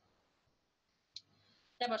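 A single short click about a second into a pause, then a woman starts speaking.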